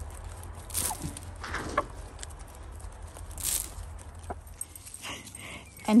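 Chickens feeding on hay: scattered pecks and rustles, with a short, soft hen call about a second and a half in.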